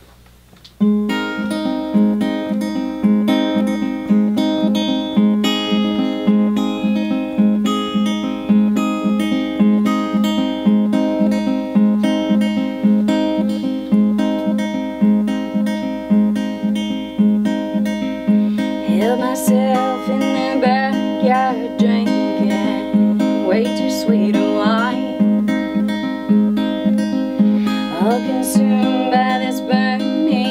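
Steel-string acoustic guitar playing a song's intro, a steady repeating picked pattern that starts about a second in. A woman's singing voice joins about twenty seconds in.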